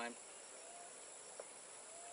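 Steady, high-pitched chirring of insects in the background, with no other clear sound.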